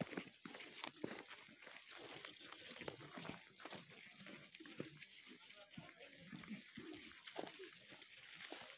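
Footsteps crunching on packed snow at an irregular pace, with faint voices of people talking.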